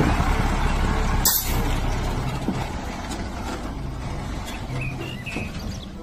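A livestock truck's engine running as the truck pulls away, slowly fading as it leaves. There is a short high hiss about a second in.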